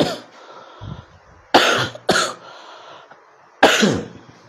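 A man coughing: a fit of four hard coughs, spaced one to two seconds apart.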